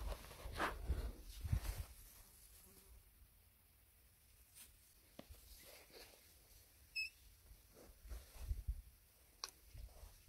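Faint handling noise of a hand-held phone camera being turned: rustling and low bumps over the first two seconds, then a quiet outdoor background with a few scattered clicks. A single short high chirp sounds about seven seconds in, and a few low bumps come near the end.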